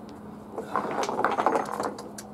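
Handling noise as a rubber exercise band is picked up off the deck and pulled up: a rapid, irregular rattle of small clicks starting about half a second in and lasting about a second.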